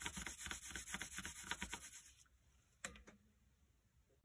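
Graphite pencil held on its side, rubbed back and forth over paper laid on a low-relief template in quick, even strokes, several a second. The shading stops about two seconds in, and a single light tap follows about a second later.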